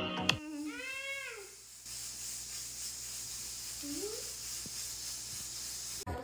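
Music cuts off just after the start. It is followed by one drawn-out voiced call, about a second long, that rises and then falls in pitch, and a few seconds later by a short rising call, both over a steady hiss.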